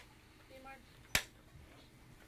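Film clapperboard snapped shut once: a single sharp clap about a second in, slating the take. A faint voice just before it.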